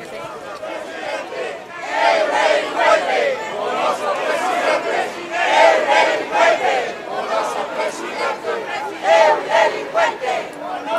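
A crowd of demonstrators shouting slogans together, many voices overlapping, growing louder about two seconds in and rising in repeated surges.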